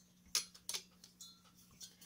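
A few light clicks and taps of plastic and metal as a graphics card's plastic fan shroud and finned aluminium heatsink are handled and fitted together. The first click, about a third of a second in, is the loudest.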